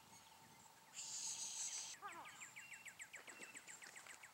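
A short high hiss about a second in, then a bird singing a fast trill of rapid repeated notes, faint against the open air.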